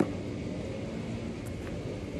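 Steady low background rumble, with one sharp knock at the very start.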